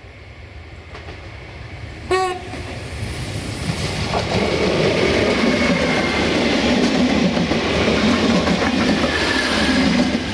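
Former DB class 614 diesel multiple unit gives a short horn blast about two seconds in, then passes close by, its diesel engines and wheels growing loud, with wheels clicking over rail joints.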